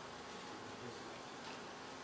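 Faint, steady room noise: an even hiss and hum with no speech.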